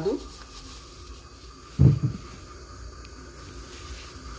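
Faint rustling of a plastic bag of grated coconut being handled and opened, with one short low thump about two seconds in.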